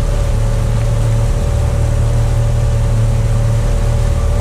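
Outboard motor of a small aluminium boat running steadily at cruising speed, with the rush of the wake along the hull.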